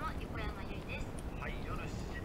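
Faint voices in the background, too indistinct to make out, over a steady low hum.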